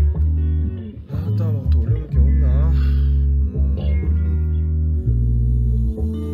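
Music with held bass-guitar notes and guitar. A voice wavers over it about one to three seconds in.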